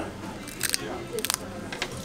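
A child biting into and chewing a crisp tortilla chip: several short, sharp crunches spread across the two seconds.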